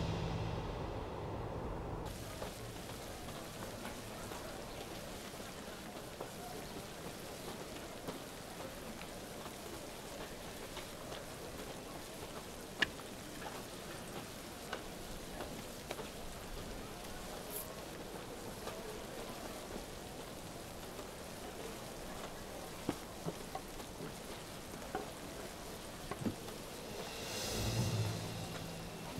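Steady background bustle of a busy market street, an even hiss-like wash with scattered small clicks and knocks.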